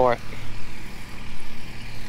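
Tractor engine running at idle, a steady low rumble.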